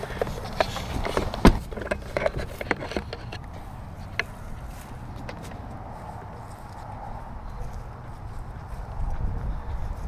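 Close handling clicks and knocks over the first three seconds, one knock louder than the rest about a second and a half in, then a steady low rumble.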